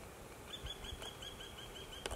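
A bird calling: a rapid run of short, evenly spaced high notes, about seven a second, starting about half a second in and carrying on to the end.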